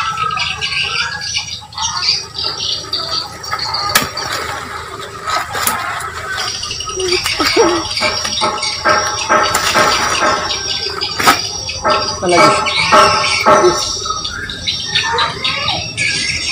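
High-pitched voices squealing and talking.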